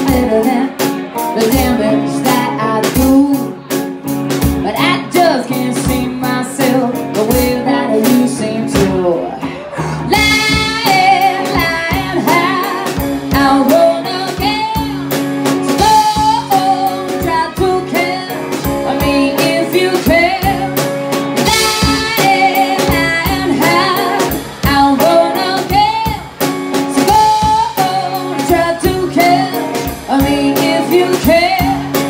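A live rock band playing: a woman singing lead over an electric guitar and a drum kit keeping a steady beat.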